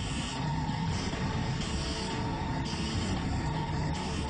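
Cartoon soundtrack of mixed sound effects and score: a steady, dense rumble with a held tone running through it and a recurring hiss.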